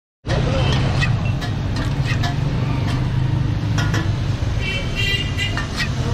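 Metal spatula scraping and clinking against a large oiled steel griddle (tawa), with sharp clicks throughout and a brief high metallic scrape about five seconds in. Under it runs a loud, steady low rumble.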